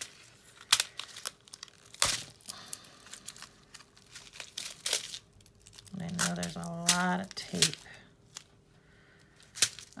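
Clear plastic tape being picked and peeled loose around the sides of a small plastic seed-bead container, crinkling, with scattered sharp clicks of the plastic; the loudest click comes about two seconds in.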